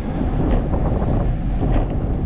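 Steady low rumble of wind buffeting the microphone of a camera on a moving bicycle, mixed with the tyres rolling on an asphalt path.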